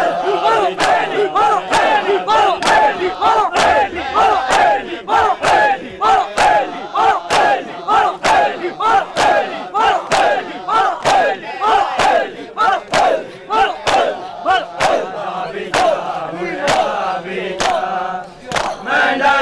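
Crowd of men doing matam, slapping their chests in unison about twice a second, with a loud group shout on each beat.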